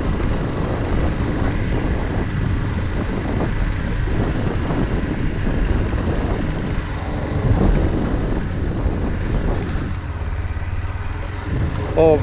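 Suzuki GD 110S motorcycle's small single-cylinder four-stroke engine running at a steady cruise on a dirt track, mixed with rumble of wind and tyres.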